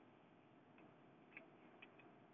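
Near silence: a faint steady hiss with a few light ticks, the clearest two in the second half.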